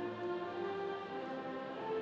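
Marching band playing the academic recessional music, a run of long held notes.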